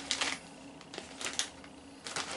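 Snack packaging crinkling in the hands: a scatter of short crackles and clicks, the sharpest a little past the middle.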